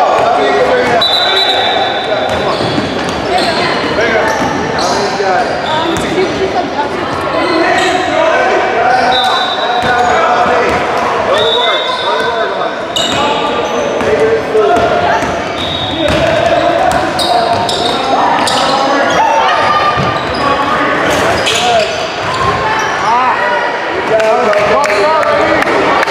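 A basketball game on a hardwood court in a large, echoing gym: a ball being dribbled and bounced, with shoes squeaking on the floor in short high squeals several times. Players and spectators are calling and chattering throughout.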